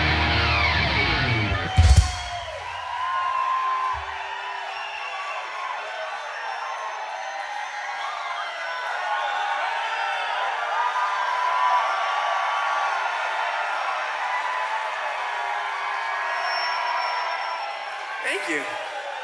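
A rock band's closing chord ringing out and ending on one loud final hit about two seconds in, followed by the audience cheering and whooping for the rest of the time.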